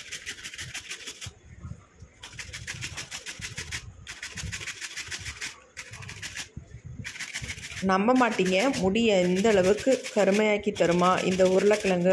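Potato being grated on a plastic hand grater: quick, even rasping strokes with a few short pauses. A voice comes in over it about eight seconds in.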